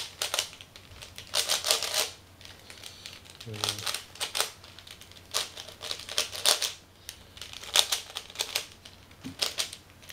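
3x3 Rubik's cube being turned quickly by hand during a speedsolve: rapid plastic clicking and clacking in bursts of several turns, with short pauses between the bursts.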